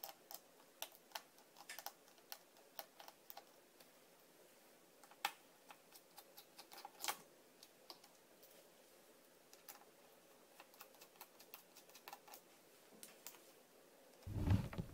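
Faint, scattered small clicks and taps, with a couple of louder ones about five and seven seconds in: a screwdriver turning out and lifting the small screws that hold the laptop's LCD panel to its hinges.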